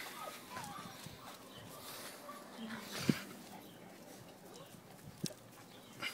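Five-week-old Dogue de Bordeaux x Neapolitan mastiff puppies moving about close to the microphone, with a few faint squeaky whimpers in the first second. Two sharp knocks come about three seconds in and again about five seconds in.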